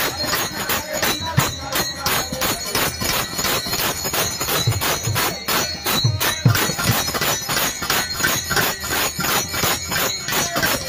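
Devotional kirtan music: a harmonium's reedy chords over a fast, even beat of small hand cymbals, about five strikes a second, with a few deep drum strokes.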